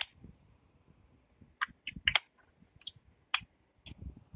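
A scattered series of short, sharp clicks and ticks, about six in four seconds, over a faint low rumble. The first, at the very start, is the loudest and has a brief high ring after it.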